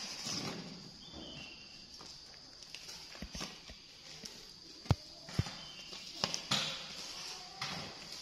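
Scattered hollow knocks of plastic ball-pit balls being handled, dropped and bouncing on a tiled floor and against a metal basin, the two sharpest about five seconds in. A faint steady high-pitched whine runs behind.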